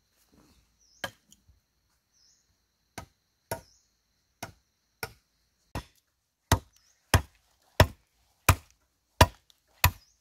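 Machete chopping into a bamboo pole: one chop about a second in, then a steady run of chops about every two-thirds of a second, getting louder past the halfway mark.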